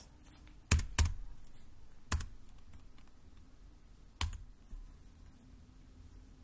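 Computer keyboard keystrokes, four separate clicks: two in quick succession about a second in, one a second later, and a last one about four seconds in.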